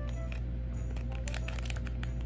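Foil wrapper of a small blind-bag packet crinkling and tearing as it is opened, with a run of crackles in the second half, over soft background music.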